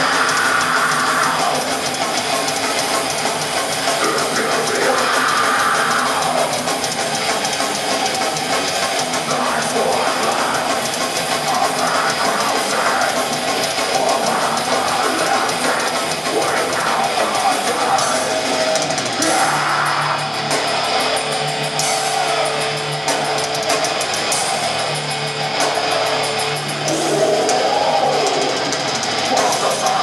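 Heavy metal band playing live, heard from the audience: pounding drum kit with cymbals and distorted electric guitars, with a held low guitar chord ringing out in the later part.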